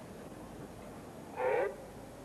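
The starter's single short call of "set" to the sprinters in their blocks, about one and a half seconds in, over low, steady stadium ambience.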